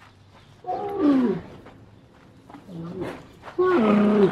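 Dromedary camel calling: three deep moaning calls, each falling in pitch. A short, fainter one comes in the middle, and the loudest begins near the end.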